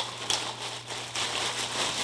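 Thin clear plastic bag crinkling and rustling as hands pull it open, with a few sharper crackles.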